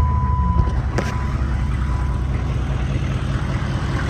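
GM 6.5-litre turbo-diesel V8 of a 1996 GMC Sierra idling steadily with a low rumble, just started after the glow-plug wait. With 390,000 miles on it, it runs well.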